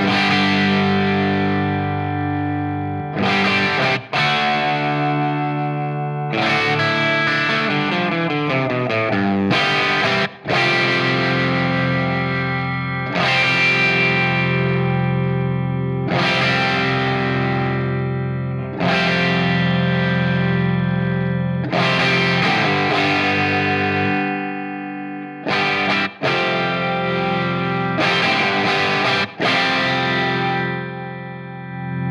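Electric guitar through a Hiwatt DR103 100-watt valve head with its channels blended internally, playing crunchy overdriven chords that are struck and left to ring, re-struck every few seconds, with a descending run of notes about eight seconds in. The treble is being turned up, which can get a bit shrill at high settings.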